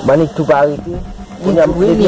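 Speech: a person talking in short phrases over a steady background hiss.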